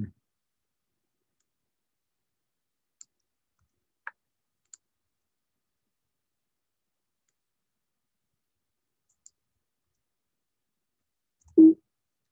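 A few faint, isolated computer keyboard clicks spaced seconds apart over a near-silent background, then a brief loud burst near the end.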